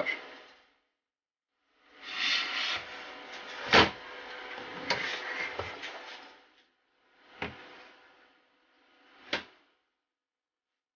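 A power adapter and its cables being handled on a wooden desk: a few seconds of rustling with one sharp knock and some clicks, then two single knocks a couple of seconds apart.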